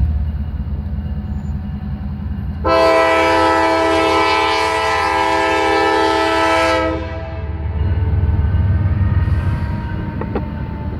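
CSX diesel freight locomotive pulling a long train out very slowly, its engine rumbling low. A few seconds in, it sounds its multi-note horn in one long blast of about four seconds.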